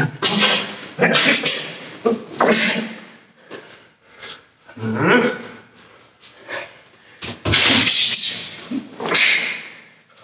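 Sharp, forceful breaths and short grunts, about six or seven, each timed with a punch as a karate fighter shadow-boxes a combination in the air.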